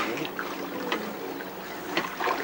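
Swimming-pool water sloshing and splashing around people wading, with faint voices in the background.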